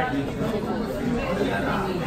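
Indistinct chatter of several voices in a busy restaurant dining room, a steady babble with no single clear speaker.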